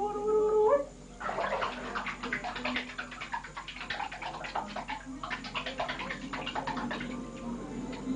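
A few hummed notes at the start, then a baby fussing and whimpering with a rough, rapidly pulsing voice for most of the rest.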